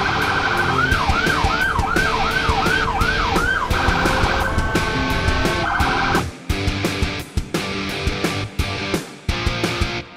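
Vehicle siren sounding in quick, repeated falling yelps, about two and a half a second, then switching to a steadier high tone and stopping about six seconds in, heard over rock music with a steady beat.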